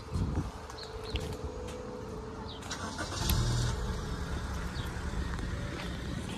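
Street traffic: a car's engine running nearby as a steady low rumble, with a louder rush about three seconds in.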